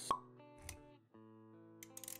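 Intro sound effects over soft background music with held notes: a sharp pop with a short ring just after the start, the loudest sound, then a softer low thump, and a quick flurry of clicks near the end.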